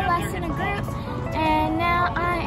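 Background pop music with a sung vocal, the singer holding several notes.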